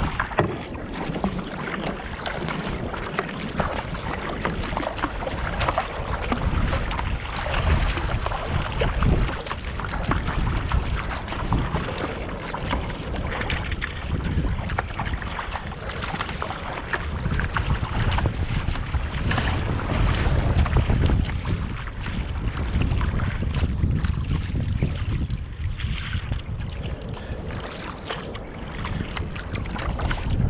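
Water rushing and splashing along the bow of a Fenn Bluefin-S surfski under way on choppy water, mixed with wind noise on the microphone that swells and eases.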